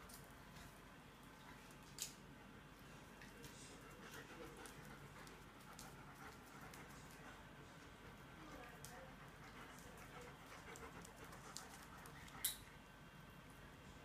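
German shepherds playing, heard faintly: panting and low vocal noises, with two sharp clicks, one about two seconds in and one near the end.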